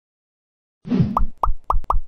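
Silence, then a short swoosh about a second in, followed by four quick cartoon pop sound effects about a quarter-second apart, each rising in pitch. These are end-card animation effects as the on-screen icons pop in.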